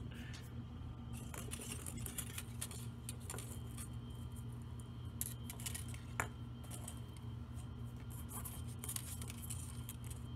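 Small clicks and clinks of glittered Christmas ball ornaments and their wires being handled on a tabletop, scattered through, over a steady low hum.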